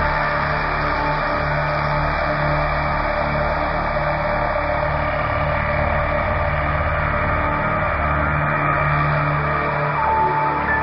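Ambient electronic music: a steady, dense drone over sustained low tones, with no beat breaks or sudden events.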